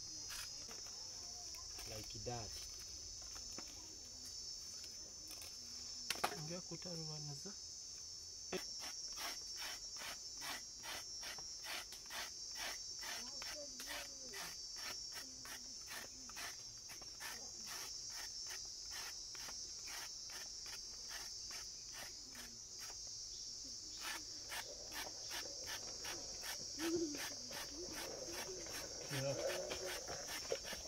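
A knife scraping the skin off a cassava root in quick, evenly repeated strokes, about three a second, over a steady high chirring of insects.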